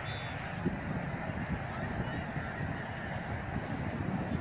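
Wind buffeting an open-air phone microphone as a steady, uneven low rumble. A brief faint high tone sounds right at the start.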